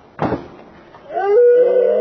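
A single sharp clack of a skateboard hitting the pavement, then about a second in a long, loud excited yell from the watching boys, held and sliding down in pitch.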